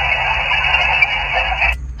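Guohetec Q900 HF transceiver's speaker hissing with band noise: the static of an empty 20-metre sideband frequency heard through the narrow receive filter. It cuts off suddenly near the end as the radio is keyed to transmit.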